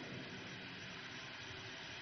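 Steady, faint background hiss of room tone.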